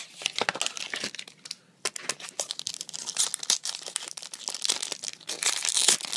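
A foil trading-card booster pack wrapper crinkling as it is handled, with a louder burst of crackling just before the end as the pack is torn open.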